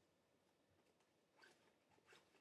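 Near silence, with faint handling of pencils and the fabric pocket of a backpack: a short rustle about one and a half seconds in, and another near the end.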